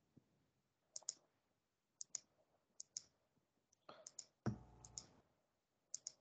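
Computer mouse clicking about once a second, each click a quick double tick of button press and release, as Greek letters are entered one by one via on-screen buttons. A brief, louder dull noise comes about four and a half seconds in.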